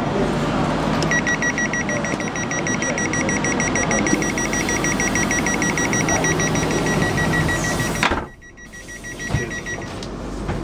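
Class 350 train's door warning: a rapid, even, high-pitched beeping with a short break about a second in. About eight seconds in there is a knock as the door shuts, and the beeping and platform sound cut off suddenly.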